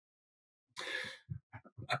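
A short in-breath taken into a webcam microphone, about half a second long, as the speaker draws breath before resuming, followed by a few faint mouth clicks.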